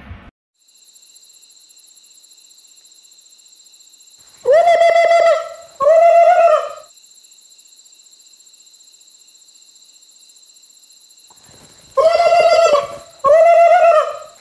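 Loud pitched animal calls, each a little under a second with a steady pitch. They come twice in quick succession near the middle, then three more times near the end, over a faint steady high hiss.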